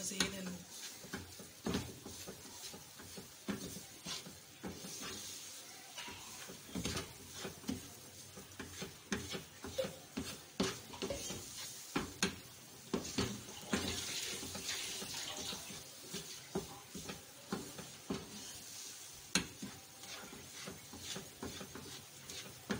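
Spatula stirring and scraping a thick coconut and sugar mixture in a nonstick frying pan as it cooks on the stove. Frequent irregular clicks and scrapes of the spatula against the pan.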